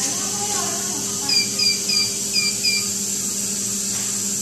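A medical equipment alarm gives a quick run of five short, high beeps about a third of a second apart. Under the beeps are a steady hiss and a low hum.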